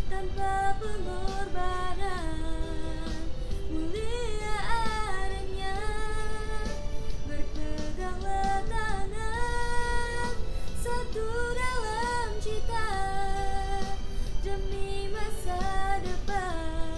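A girl singing solo, holding long notes with vibrato and sliding between pitches.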